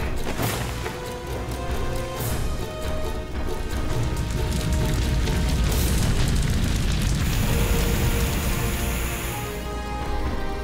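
Cartoon soundtrack: background music with held notes over a heavy low rumble of sound effects, with a few sharp hits along the way.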